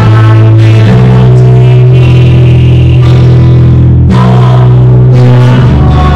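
A worship song played by a band: held chords over a sustained bass line, changing every second or so.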